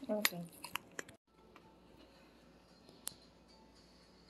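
A person's voice and a few sharp clicks in the first second, then the sound cuts off suddenly. What follows is faint room tone with a single sharp click about three seconds in.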